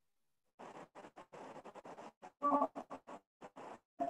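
Choppy, broken-up audio from a remote participant on a video call: short garbled fragments chopped apart by dead gaps, with a brief buzzy tone about two and a half seconds in. The presenter's sound is breaking up and is unintelligible, a sign of an audio or connection fault on his end.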